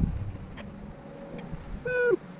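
Rustling and light knocking of a person crawling over a wooden bed frame and foam mattress inside a truck-bed camper topper. Near the end comes a brief pitched tone that drops in pitch as it stops.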